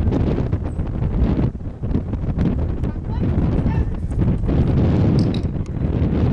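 Wind buffeting the microphone: a continuous low rumble that swells and dips unevenly.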